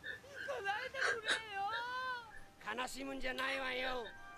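Anime voice acting in Japanese played at low volume: a character wailing and sobbing in a high, wavering voice, followed by a more steadily held line of dialogue near the end.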